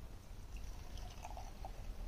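Beer poured from an aluminium can into a stemmed glass: a faint, uneven liquid pour that starts about a second in.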